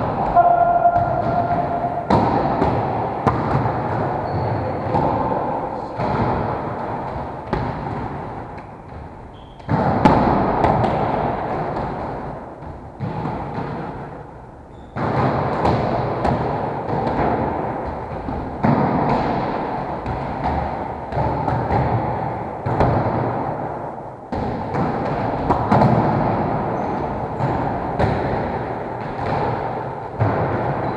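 Volleyballs being struck and bouncing on a wooden gym floor, a sudden thud every few seconds, each ringing out in the echoing hall.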